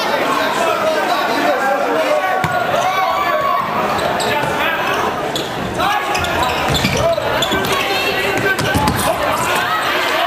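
Volleyball rally in a gymnasium: shouting and chatter from players and spectators throughout, with a few sharp thumps of the ball being struck in the second half.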